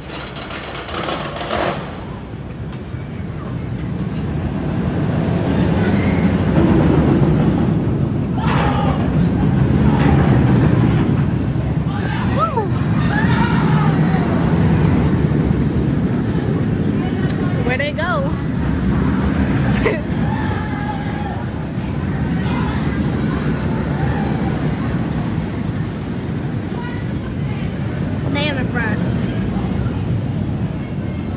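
Steel roller coaster train rumbling along its track, building over the first several seconds and staying loud. Riders' screams and shouts rise above it several times.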